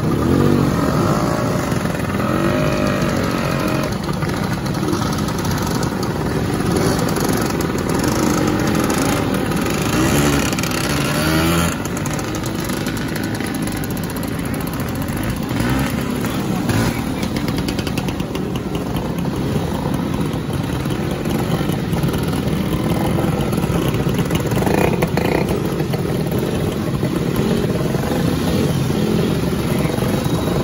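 A procession of classic two-stroke scooters, Vespas and Lambrettas, riding past one after another, their small engines revving up and dying away in overlapping glides as each pulls off. Near the end a few motorcycles ride past among them.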